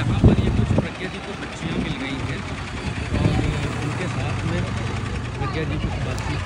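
Several young women chattering at once over a bus engine idling as a steady low hum.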